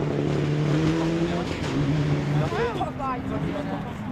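Rally car engine running at high revs, its pitch stepping up and down with gear changes.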